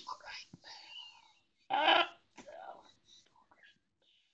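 A man's breathy, mostly unvoiced laughter, with one louder gasp of laughter about two seconds in and smaller puffs of breath after it.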